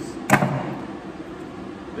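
A single sharp metal clank with a brief ring, about a third of a second in: steel diamond shears being set down on the glassblower's bench.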